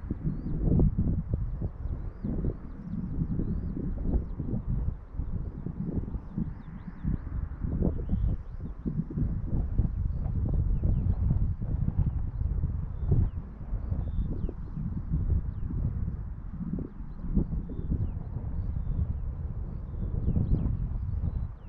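Strong, gusty wind buffeting the microphone, a low rumble that surges and dips, with faint small-bird chirps high above it.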